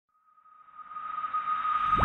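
Intro sound effect: a steady high tone, joined by a rushing swell that grows louder through the second half. It is a riser building up to the channel's intro music.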